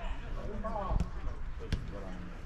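A man's short shout, then two sharp knocks about three-quarters of a second apart, over a steady low rumble of wind on the microphone.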